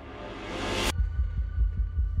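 Horror film sound design: a rising swell of noise that cuts off sharply just under a second in, giving way to a rapid, low, heartbeat-like pulsing under a faint sustained high drone.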